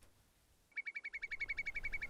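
A bird calling outdoors in a rapid, even trill of short high-pitched notes, about nine a second, starting under a second in.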